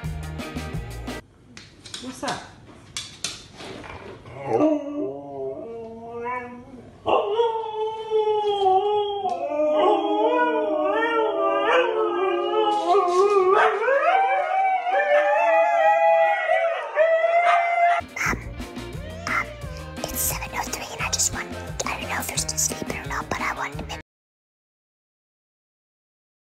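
Husky howling and yowling in long, wavering calls that rise and fall in pitch, with a few shorter calls from about five seconds in and a sustained stretch of about ten seconds after that. Background music with a beat plays before and after the howling.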